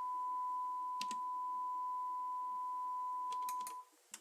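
Steady 1 kHz sine test tone from an audio analyzer's generator that cuts off abruptly near the end, as the generator is switched off to measure the recorder's noise floor. A single click about a second in and a quick run of clicks just before the tone stops are presses of the analyzer's front-panel buttons.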